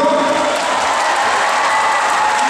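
Audience applause with music playing under it, a long held note running through most of it.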